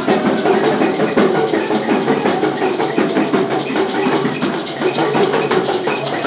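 Traditional Akan festival percussion: drums and gourd rattles playing a dense, fast, steady rhythm.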